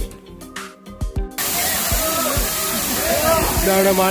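Background music for about the first second and a half, then a sudden cut to the steady rush of a waterfall pouring down a rock face, with people's voices over it.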